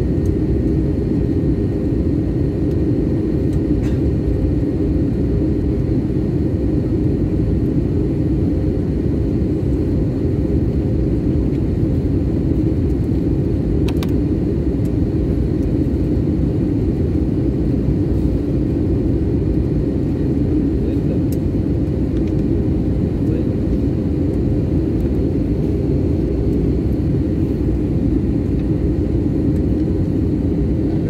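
Airliner cabin noise in flight: a loud, steady rumble of engines and rushing air, with a faint steady whine above it.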